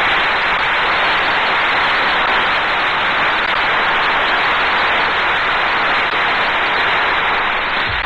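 Studio audience applauding steadily, heard on an old narrow-band radio broadcast recording.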